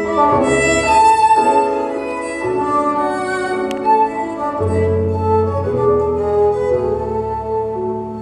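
Two fiddles playing a tune together in a live duet, with long bowed notes that change about once a second over a held low note.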